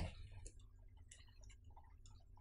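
Near silence with faint, irregular light ticks of a stylus tapping and moving on a writing tablet as a word is handwritten.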